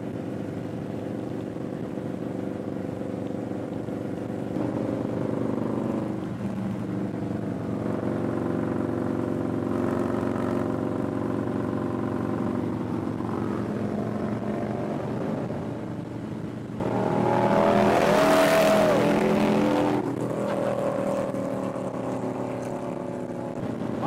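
Harley-Davidson touring motorcycle's V-twin engine running at cruising speed, a steady low drone with road and wind rush. The engine note changes about five seconds in, and a louder rush of noise swells for about three seconds near the end.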